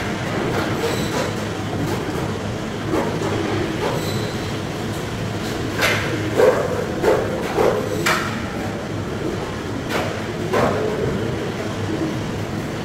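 Steady machinery rumble in a fish-processing room, with a run of short knocks and clatters from about six to eight seconds in and two more near the end.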